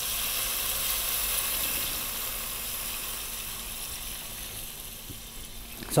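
Water poured from a glass jug into a hot pot of sweated-down vegetables, splashing and sizzling on the hot pan, the hiss slowly dying down.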